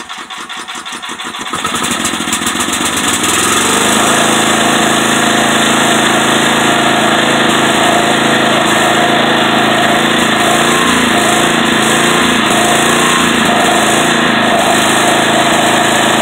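Sears Craftsman 4000-watt portable gas generator's engine, just pull-started, picking up speed over the first few seconds and then running steadily at a constant speed.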